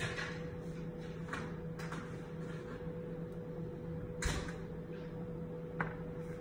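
Oven being opened and a baking tray being pulled out, heard as light clatters, a heavy thud about four seconds in and a sharp click near the end, over a steady hum.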